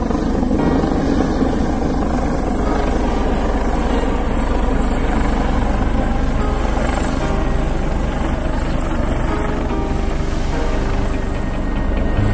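Helicopter flying low overhead, its rotor and engines running steadily and loudly throughout.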